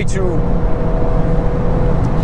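Interior noise of a VW Golf R Mk8 accelerating at just over 200 km/h: a steady heavy rumble of wind, tyres and its turbocharged four-cylinder engine, with a faint steady whine that fades near the end.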